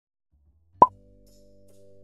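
A single short cartoon-style pop sound effect a little under a second in, followed by soft, held music tones slowly fading in.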